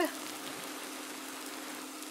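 Steady sizzle of onions frying in butter in a skillet, with riced cauliflower just poured on top. A faint steady hum sits underneath.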